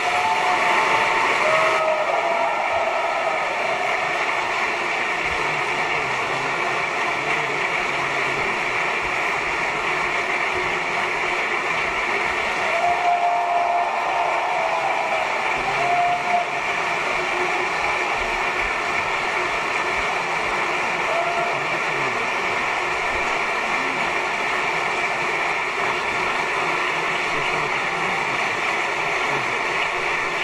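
Steady audience applause for the dancers' curtain-call bows, with a few brief shouts heard over it in the first half.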